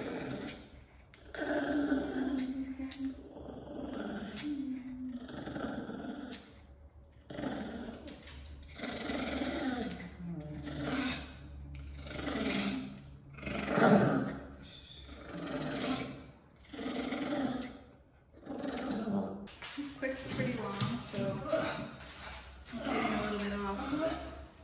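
Shih tzu growling and whining during nail clipping, a string of rising-and-falling grumbles about a second apart. The groomer puts it down to pain in his sore, allergy-damaged paws.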